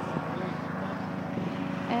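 A lawn mower engine running with a steady drone.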